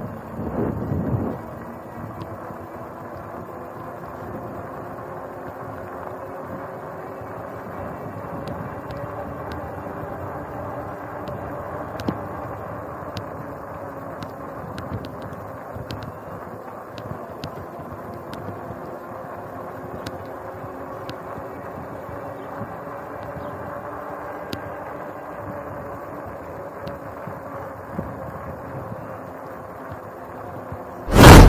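Bicycle rolling over concrete: steady tyre noise with a faint hum that drifts slowly in pitch, and light scattered clicks. A brief gust of wind on the microphone in the first second or so.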